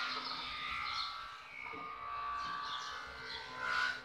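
Screw being driven into the wood of a wooden cabinet with a screwdriver, giving a continuous squeal of several wavering pitches that swells near the end and stops suddenly.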